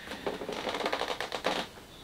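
A rapid run of dry clicks and crackles for about a second and a half: a large cardboard box being handled and shifted by hand.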